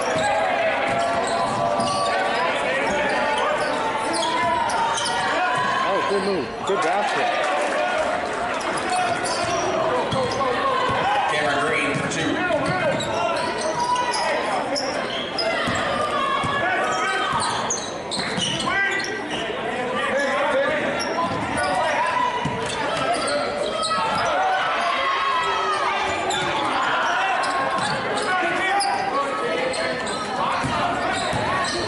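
Echoing sound of a basketball game in a gymnasium: players and spectators calling out over one another, with a basketball dribbled on the hardwood floor.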